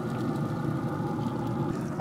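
Steady mechanical hum with a few faint steady tones from a running Camp Chef pellet grill, its fan blowing the fire, with the lid open.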